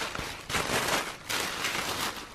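Thin black plastic wrapping crinkling and rustling in three bursts as a package is unwrapped by hand.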